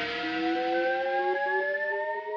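Logo-ident music: a held chord of several tones slowly rising in pitch together, a riser building toward the next hit.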